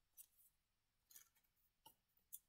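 Near silence, with three faint short rustles from hands handling a foil trading-card booster pack.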